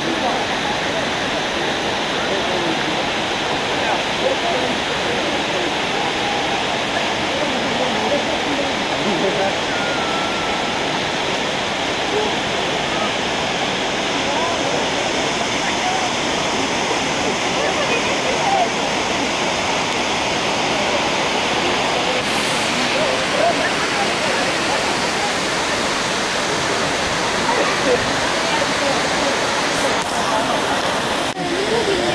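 Waterfall rushing steadily, a continuous even roar of falling water, with faint indistinct voices of people in the background.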